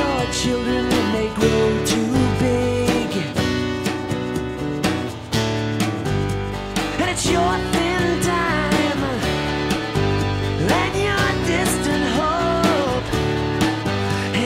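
A rock band playing: guitar, bass and drums, with a vocal line wavering above them.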